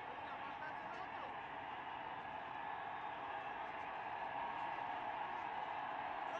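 Steady background ambience of a televised football match in an empty stadium, with faint voices carrying from the pitch.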